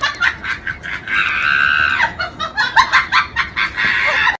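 A run of short, rapid clucking calls, then one long held call from about one to two seconds in, then more rapid clucks.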